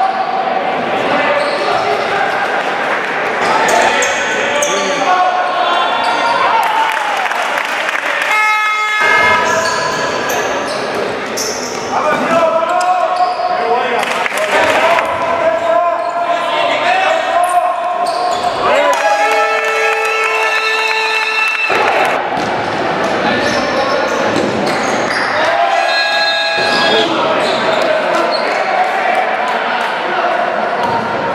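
Live sound of a basketball game in a large sports hall: the ball bouncing on the court amid players' shouts and calls, echoing off the hall walls.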